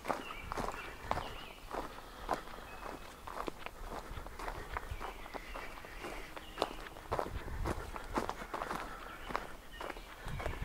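Footsteps of a person walking at a steady pace on a wood-chip trail, a little under two crunching steps a second.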